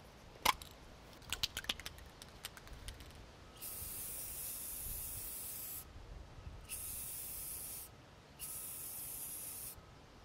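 An aerosol can of enamel spray paint hissing in three bursts as letters are painted onto a truck door. A long spray draws the O, then two shorter sprays draw the X. Before them come a sharp click and a few small rattling clicks.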